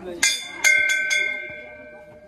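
A metal bell struck four times in quick succession, its clear tones ringing on and slowly fading.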